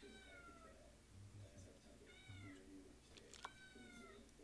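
A cat meowing faintly three times: a falling call at the start, another about two seconds in, and a third near the end.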